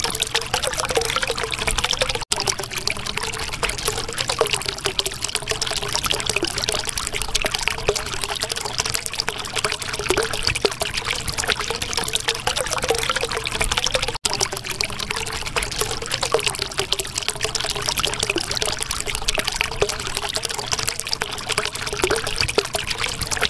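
Water trickling steadily, with two momentary cut-outs in the sound, about two seconds in and about fourteen seconds in.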